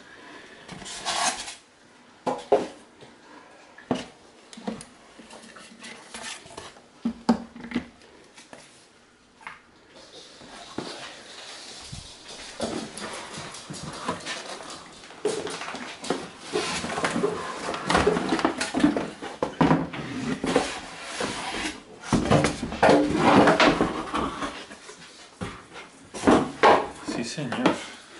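Cardboard box and polystyrene packing being handled as a steam generator iron is lifted out: repeated rustling, scraping and short knocks.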